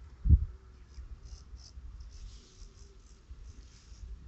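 Wind buffeting the microphone in an open field, with one strong gust about a third of a second in and faint high scratchy sounds later on.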